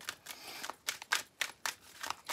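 Oracle cards being shuffled by hand: a quick run of sharp card snaps, about four a second, with a soft rustle of cards sliding between them.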